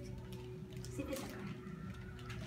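Clear plastic bag rustling and crinkling faintly as it is handled and an apple piece is put into it.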